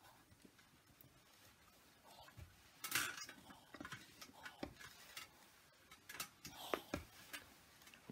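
A household iron pushed back and forth over cotton fabric on an ironing board: faint scattered knocks, clicks and rubbing, starting about two seconds in.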